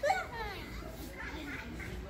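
A girl's short spoken call at the start, then faint voices of children playing.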